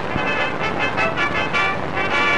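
Stage band playing on an old film soundtrack, a run of short quick notes between longer held chords, under a steady hiss across the whole soundtrack.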